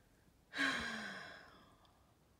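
A sigh: one breathy exhale with a faint falling hum of voice, starting about half a second in and trailing away over about a second.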